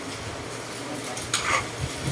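A steel trowel stirring and scraping wet skim coat mix on a plastic tabletop, with a couple of short scrapes about a second and a half in, over a steady hiss.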